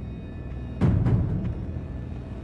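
A single deep drum hit in the film's background score about a second in, dying away over about half a second, over a low steady background.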